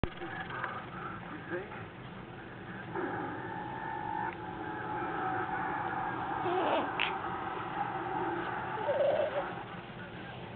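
A newborn baby making small squeaks and grunts, with a television playing in the background.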